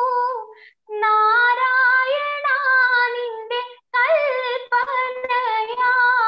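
A woman singing solo and unaccompanied, holding long notes with wavering, gliding ornaments, heard over a video call. The line breaks for short pauses about one second and about four seconds in.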